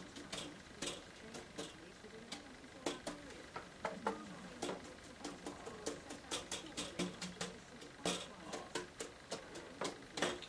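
Watercolour brush dabbing paint onto paper to put in autumn leaves: a run of light, irregular taps, two or three a second.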